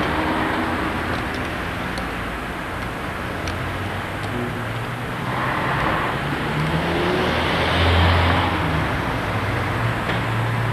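Car traffic on a town street: engines and tyres of cars driving past. One passes close about eight seconds in, the loudest moment.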